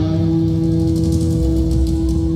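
Live rock band music: after a run of picked guitar notes, one electric guitar note is held and rings steadily over a low bass note.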